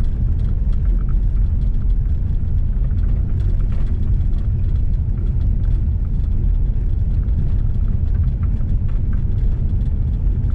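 Car driving on a gravel road, heard from inside the cabin: a steady low rumble of tyres and engine, with scattered faint ticks of gravel.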